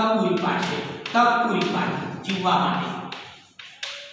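Chalk tapping and scraping against a blackboard as a line is written, with a man talking over it; a few sharp chalk taps come near the end.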